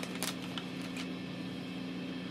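A few faint crinkles of a small plastic bag being handled and opened, in the first second, over a steady low electrical hum.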